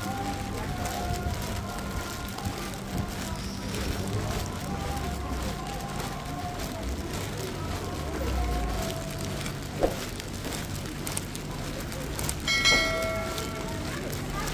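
Street ambience in a wet market lane: a steady hiss with faint, indistinct voices in the background. There is a single sharp knock about ten seconds in, and near the end a short, loud beep, the loudest sound.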